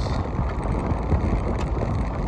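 Steady low rumble of a convertible driving slowly over gravel with the top down, tyre and engine noise mixed with wind on the microphone.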